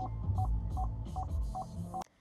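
Parking-assist warning beeping in an Opel Astra Sports Tourer while reversing: short beeps of one pitch, about two and a half a second, warning of an obstacle close behind. A low cabin rumble sits underneath.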